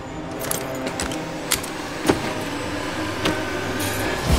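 Surgical instruments clinking: several sharp metallic clicks scattered over a low, steady hum.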